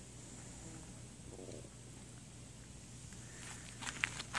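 Quiet outdoor ambience: a faint steady low hum and hiss, with no distinct sound standing out.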